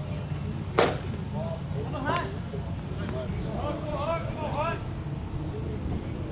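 A single sharp pop about a second in, a pitched baseball smacking into the catcher's mitt, followed by distant shouted voices of players on the field.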